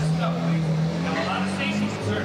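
A motor vehicle's engine running steadily, its pitch creeping slowly upward, with voices in the background.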